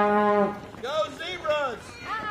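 A horn sounding one steady blast that cuts off about half a second in, followed by spectators' raised, cheering voices.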